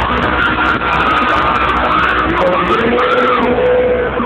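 Live cumbia band playing at full volume, heard from the audience, with a melody line that bends up and down and a long held note near the end.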